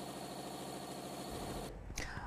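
Faint steady machinery hum of a factory floor with a thin steady whine, cutting out shortly before the end, followed by a brief click.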